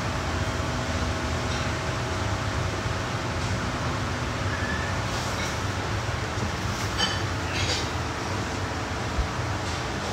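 Steady low rumbling background noise, with a couple of faint short clicks about seven seconds in.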